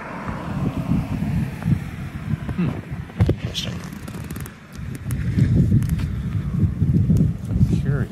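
A car drives past and fades away in the first second or so. Then there is a low, irregular rumble of wind and handling noise on a handheld phone microphone, louder in the second half.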